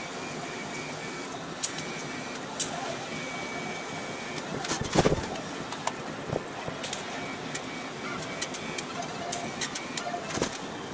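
TIG welding arc hissing steadily as a steel steering arm is welded onto an early Ford spindle, with a few sharp clicks and a louder knock about halfway through.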